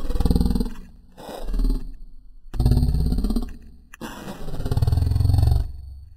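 A very deep, distorted voice in four long drawn-out sounds with short gaps between them, like speech slowed down and pitched far lower.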